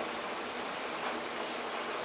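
Steady background hiss, even and unbroken, with no distinct event: room tone during a pause in speech.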